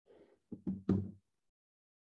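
Three quick knocks or thumps in a row, about a fifth of a second apart, half a second in, with a faint rustle just before.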